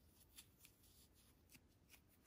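Near silence with a few faint, irregular ticks and rustles of a metal crochet hook pulling cotton yarn through single crochet stitches.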